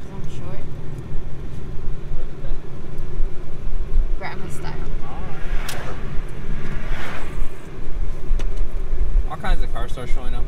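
Steady low rumble of road and wind noise inside the cabin of a moving car with the driver's window down. Brief voices cut in about midway and again near the end.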